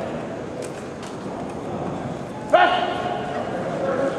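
A short shouted call about two and a half seconds in, held on one pitch, over the steady echoing noise of an indoor sports hall with a few faint clicks.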